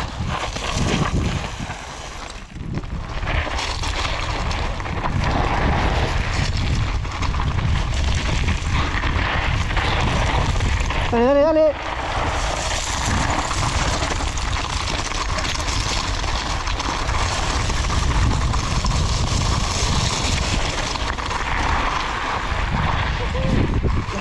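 Mountain bike descending loose rocky gravel, heard through an action camera: a steady rush of wind on the microphone with the tyres crunching over stones and the bike rattling. A brief rising vocal whoop about halfway through.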